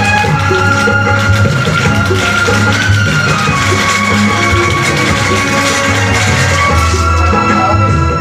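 Music with a drum beat and held melody notes, playing loudly from a vinyl record on a turntable; the melody line steps down in pitch about halfway through.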